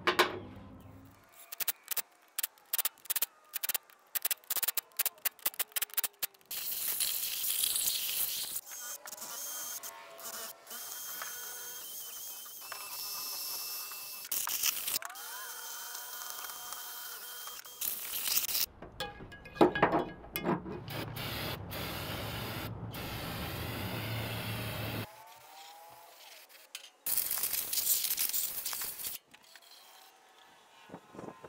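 A run of workshop tool sounds: quick clicking and ratcheting, then stretches of scraping and rubbing as a cast-iron cylinder head is cleaned with a cordless power tool and a hand brush.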